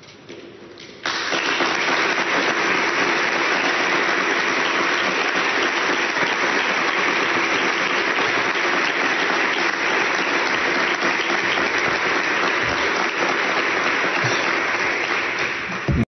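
Audience in a hall applauding: the clapping starts suddenly about a second in and carries on steadily and strongly.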